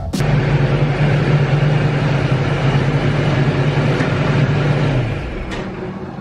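An overhead garage door opener running as the door travels: a steady mechanical hum with rumble that starts suddenly, dies away about five seconds in, and is followed by a faint click.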